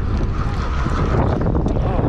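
Wind buffeting the microphone on a small boat out on choppy water, a steady low rumble with fluttering gusts.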